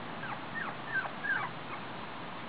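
Puppies whining at play: about five short, faint, high cries, each falling in pitch, in the first second and a half.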